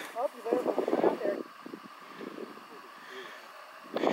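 Brief indistinct speech for about the first second and a half, then a faint, steady outdoor background.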